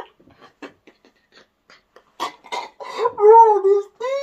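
A man laughing helplessly: faint short gasps at first, two loud bursts about two seconds in, then a long wavering high-pitched laugh.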